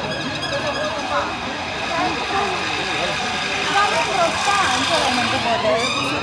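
Chatter of children's voices over steady traffic noise. Near the end an emergency-vehicle siren starts up, rising in pitch.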